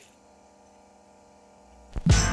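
Faint, steady electrical hum from a turntable playback setup while the tonearm is moved over the vinyl record, with a low rumble building near the end as the stylus comes down.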